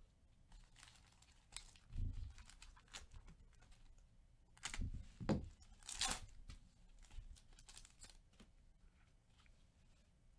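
Foil wrapper of a Panini Chronicles trading-card pack being torn open and crinkled by hand, in several short rips, the loudest about five to six seconds in.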